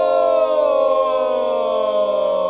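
Barbershop quartet of four men's voices singing a cappella, holding a loud chord whose voices slide slowly downward together into a lower chord.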